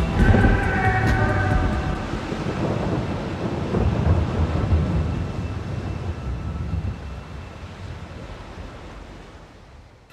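The tail of a synth-pop track: a held synth chord in the first two seconds gives way to a low rumbling wash of noise that slowly fades out.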